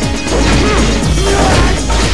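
Action-trailer music with a loud crashing impact sound effect laid over it.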